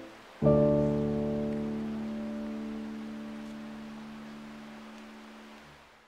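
Closing music: one piano chord struck about half a second in, left to ring and slowly die away, then fading out at the end.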